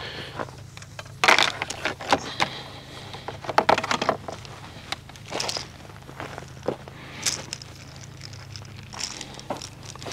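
Insulated electrical wire being pulled and handled by hand, heard as irregular short rustles and scrapes of the cable insulation.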